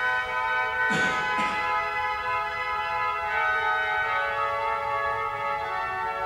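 Pipe organ holding sustained chords, with many steady overtones; the held notes shift around three and four seconds in. Two brief noises sweep across the sound about a second in.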